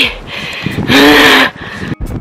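A woman's loud, breathy voiced sigh about a second in, lasting under a second, its pitch rising then falling.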